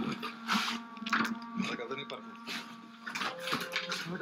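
Speech over a steady low hum and distorted sound from a radio that seems to be playing though it is not connected to anything.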